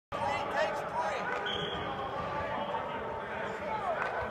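Several men's voices talking and calling out at once in a large indoor football practice hall, with a few scattered thuds.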